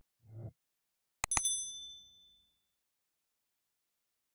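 Subscribe-button animation sound effects: a short low swish, then a quick double click about a second in, carrying a bright bell-like ding that rings out for about a second.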